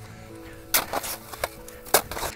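A few sharp, short chops of avalanche shovel blades cutting into packed avalanche snow, over quiet background music with faint steady tones.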